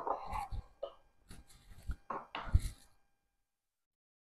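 A few faint knocks and taps from kitchen handling while the cook reaches for the salt, the loudest a low thump about two and a half seconds in, then dead silence for the last second or so.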